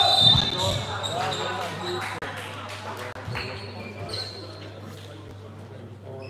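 Basketball game sounds echoing in a sports hall: voices calling out near the start, a few sharp ball bounces, and a couple of short high-pitched tones, with the noise dying down during a stoppage in play.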